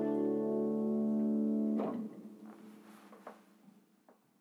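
Final held chord of a cello and piano ending a piece: a long steady bowed cello note with piano stops sharply a little under two seconds in. A few faint knocks follow as the sound dies away.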